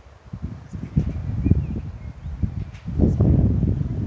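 Wind buffeting the microphone: an uneven, gusty low rumble that grows stronger about a second in and is heaviest near the end.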